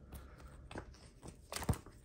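Rigid plastic card saver being handled as a sleeved trading card is slid into it: faint plastic scrapes and small clicks, with a louder cluster of clicks about one and a half seconds in.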